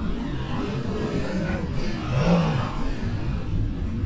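Cape fur seal colony calling, with a pitched call that rises and falls about two seconds in, over wind on the microphone.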